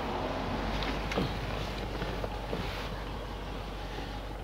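Steady background hiss and low rumble of outdoor ambience, with a few faint light clicks.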